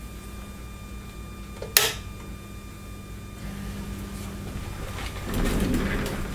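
Ham radio station equipment being powered up: a single sharp switch click about two seconds in over a steady electrical hum, then a louder low rumble near the end.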